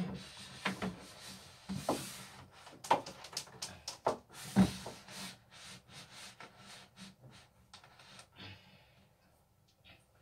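Handling noises: objects and a power cord being placed and shifted on top of a shelf unit, with scattered light knocks and rubbing. The loudest knocks come about three and four and a half seconds in, and the sounds die away near the end.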